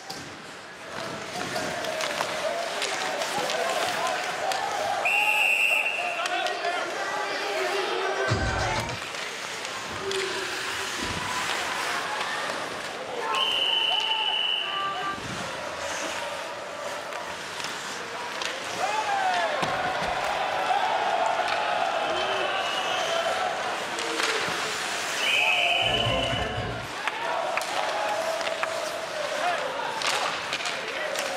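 Ice hockey arena ambience: a crowd's steady din with the referee's whistle blown in three short blasts, the first a few seconds in, the second near the middle and the third near the end, and a few dull thuds of bodies or the puck against the boards.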